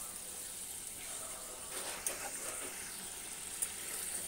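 Egg-curry gravy simmering in a frying pan: a steady, quiet bubbling hiss with a few faint pops.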